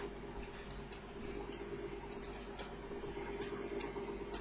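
Faint, irregular clicks and ticks from handwriting input on a digital whiteboard, over a low steady hum.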